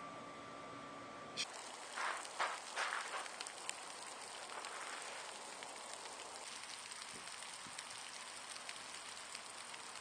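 A shower head fed by a garden hose spraying water, a steady hiss of spray and falling droplets that starts about a second and a half in.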